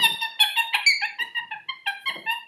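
Lorikeet chattering: a quick run of short, squeaky chirps, several a second, slowly getting quieter.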